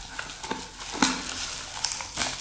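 Light rustling and a few small clicks as small items are handled and moved, the sharpest click about a second in.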